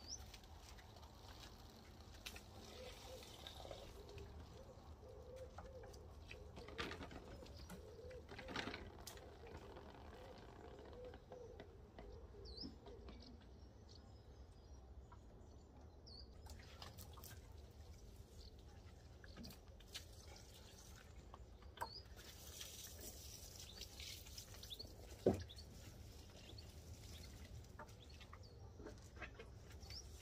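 Faint garden birdsong: a pigeon cooing low and steadily for several seconds, then a few faint high chirps from small birds. A single sharp knock comes about 25 seconds in.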